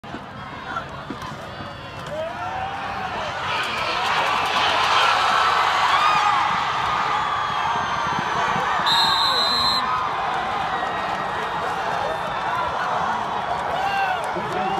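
Stadium crowd shouting and cheering. It swells from about two seconds in and stays loud.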